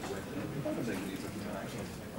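Low, indistinct speech from people talking quietly in a classroom.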